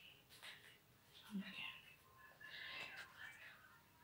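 Very faint whispering, otherwise near silence.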